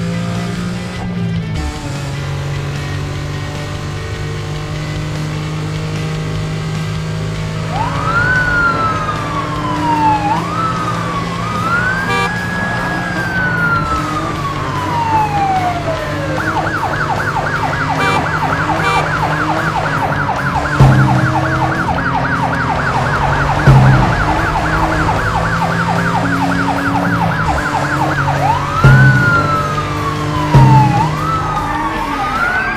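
Police car siren sound effect, first wailing in slow rising and falling sweeps from about a quarter of the way in, then switching to a fast yelp for most of the second half, and going back to a wail near the end. It plays over steady background music, with a few short low thumps in the later part.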